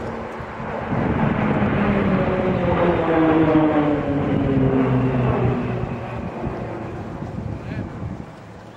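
Formation of Pilatus PC-9/A turboprop trainers flying past, their propeller drone swelling to its loudest about three to four seconds in. The pitch falls steadily as they pass, and the drone then fades.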